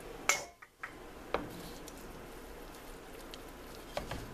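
A few sharp clinks of kitchenware at a pot on the stove: a loud one shortly in, a brief dropout, two lighter ones about a second in, then a steady faint background hum.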